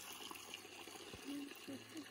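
Faint, steady trickle of spring water running out of a pipe in the roadside bank.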